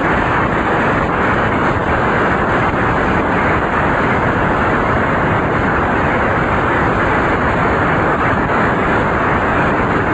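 An audience applauding: dense, steady clapping that runs on without a break.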